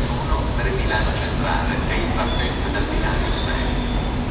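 FS E656 'Caimano' electric locomotive starting to pull away with its train: a steady, loud low rumble of the locomotive under way.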